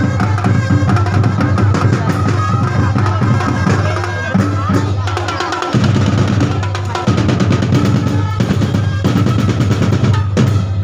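Loud drum-driven music: a dense, fast beat of bass and snare drums with drum rolls. The deep drums drop out for a moment just before the middle and come back in.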